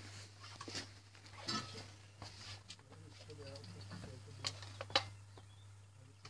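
Shotgun being handled and readied at the stand, with a few sharp metallic clicks near the end, over faint voices and a steady low hum; no shot is fired.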